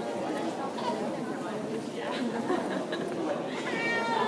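Indistinct chatter of many people talking at once, a steady murmur of overlapping voices with no words standing out. Near the end a brief high-pitched sound rises above it.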